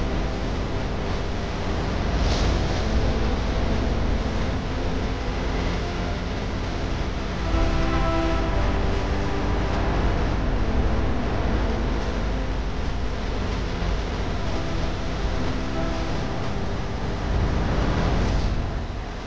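Audio of a film-clip mashup playing: a dense, noisy rumble with several steady held tones, loudest about eight seconds in.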